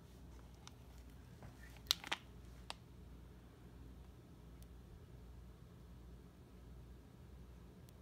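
Quiet room tone with a few short, faint clicks and a brief rustle about two seconds in, small handling noises.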